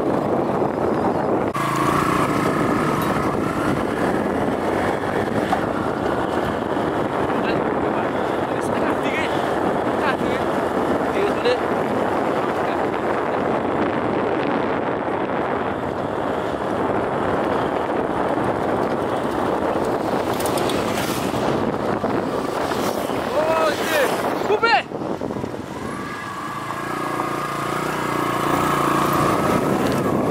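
Steady rushing and rumbling of a vehicle moving along a gravel road, with wind on the microphone. A short dip and a few brief gliding, voice-like sounds come a little after two-thirds of the way through.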